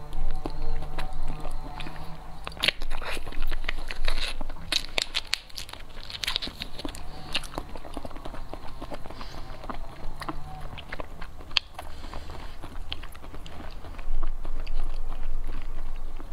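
Close-up eating sounds of jelly being sucked and chewed from plastic stick pouches: a continuous run of small wet mouth clicks and smacks.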